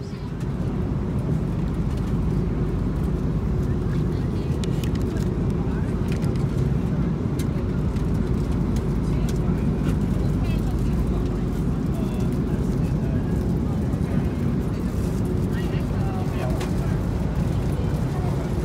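Airliner cabin noise in flight: a steady low rumble with a faint constant hum, with scattered small clicks.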